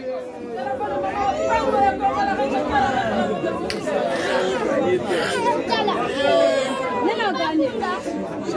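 Crowd of spectators chattering and calling out, many voices overlapping at once.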